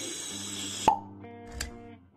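Intro music with sound effects: a hissing whoosh that ends in a sharp pop about a second in, the loudest sound, then held music tones with a softer click.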